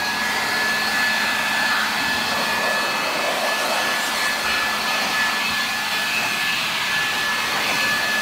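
Vacuum cleaner running steadily, its motor holding a high whine over a loud rush of air.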